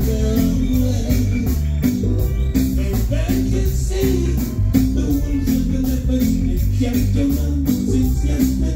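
Live reggae band playing, heard through a phone's microphone: a deep, steady bass line under a quick, regular high ticking of percussion.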